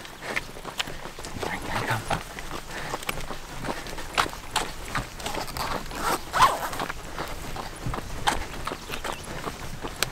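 Wet neoprene wetsuit being peeled off the arms: irregular rubbing, squeaking and slapping of the stretched rubber against skin, with hard breaths in between.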